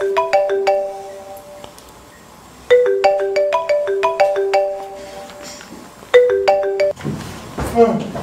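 A mobile phone ringtone playing: a short tune of bell-like mallet notes that repeats about every three and a half seconds. The third repeat cuts off about seven seconds in, and a brief vocal sound follows.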